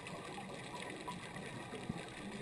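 Faint, steady underwater background noise, with one soft knock just before the end.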